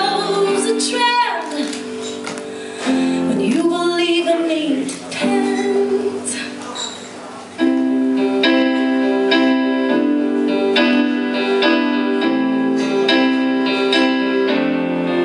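Live female vocal with keyboard: a woman sings sliding, wavering notes with no clear words over held chords, then about seven and a half seconds in the keyboard comes in louder with repeated chords in a steady rhythm.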